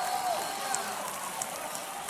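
Congregation responding in a large hall: an even patter of clapping with faint voices calling out, strongest in the first half second.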